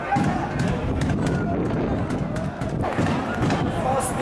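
Men's voices calling out across an open football pitch, with several short thuds in between.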